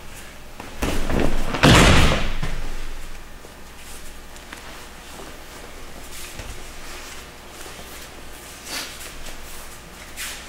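A sumi gaeshi sacrifice throw landing on judo tatami mats: a short rustle of judogi about a second in, then one heavy thud of bodies hitting the mat just under two seconds in that dies away within a second. Faint small knocks follow as the judoka move about on the mats.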